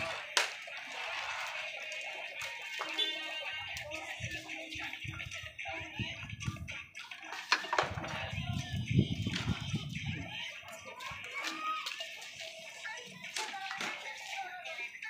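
Background music and voices, with a sharp click about half a second in and a few more clicks later from the pieces being struck on a homemade plywood pool board; a low rumble rises about eight to ten seconds in.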